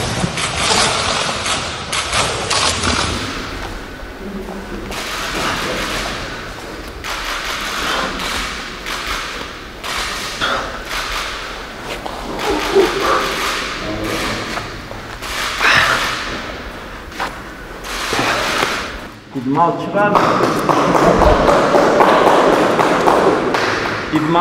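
Scattered thuds and knocks of hex dumbbells being handled and lifted in a large, bare gym room, with voices.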